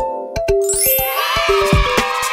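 Cheerful logo-intro jingle music: short plucky notes over a clicking beat, then a rising sweep about two-thirds of a second in that opens into a bright, shimmering chime. A bass line comes in near the end.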